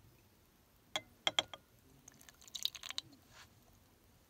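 Three light clicks of glassware being handled, then a short spell of soft wet crackling and splashing as the precipitate slurry is poured from a glass beaker into a paper-lined funnel.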